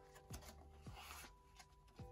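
Near silence: faint background music, with two or three soft handling sounds as a postcard is slid into a plastic binder sleeve.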